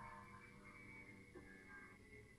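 Near silence: faint room tone with a few faint steady tones.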